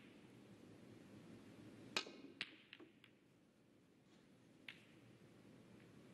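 A snooker shot: a sharp click of the cue and cue ball about two seconds in, then a few lighter clicks of snooker balls striking each other, the last near five seconds, over quiet arena hush.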